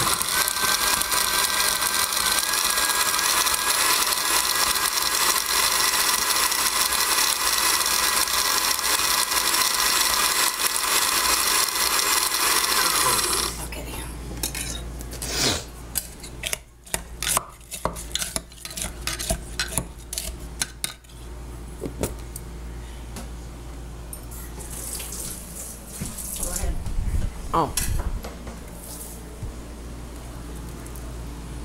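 Vintage countertop blender running on a dry load of tortilla chips, its motor giving a steady whine that cuts off suddenly about thirteen seconds in. Scattered clicks and knocks follow as the glass jar and the blender are handled.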